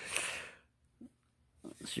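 A man's breathy laugh trailing off in the first half second, then near silence for about a second before he starts speaking again near the end.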